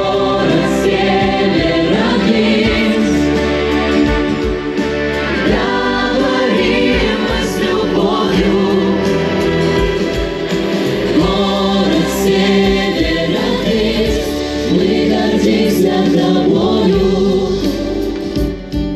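A pop vocal ensemble singing together in chorus over instrumental accompaniment.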